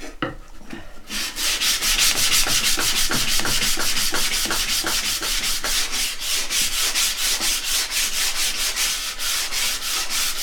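Hand-sanding a thin wooden stick with fine 240-grit sandpaper: quick, even back-and-forth scratching strokes, about four a second, starting about a second in.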